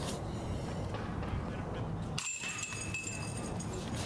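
Quiet, steady outdoor background noise, mostly a low rumble. From about halfway through, a faint, high, steady ringing is added.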